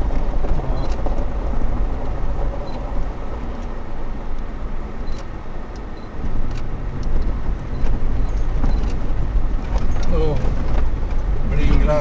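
A vehicle driving slowly over a rough desert gravel track, heard from inside the cabin by a dashcam: a steady low rumble of engine and tyres with scattered clicks and rattles. Voices come in near the end.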